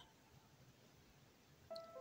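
Near silence, with faint background music coming back in near the end.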